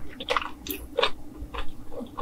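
Close-miked chewing of food, with irregular wet clicks and crackles several times a second.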